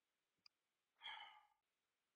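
A short, faint sigh of exasperation over a webcast line, about a second in, with a tiny click just before it; otherwise near silence.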